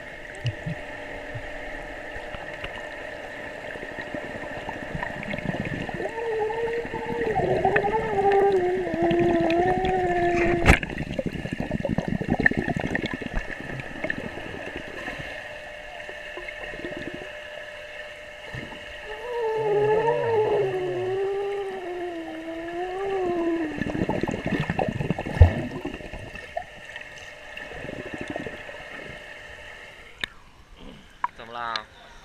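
Pool water heard from below the surface: churning and gurgling of a child swimming, over a steady high hum. Twice a long, wavering pitched tone lasting several seconds sounds through the water, and there are two sharp knocks, one near the middle and one later.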